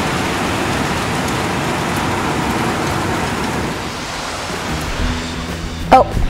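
Heavy rain pouring down: a steady, even hiss.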